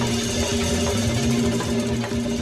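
Live dance band playing, with horns over a strong bass line.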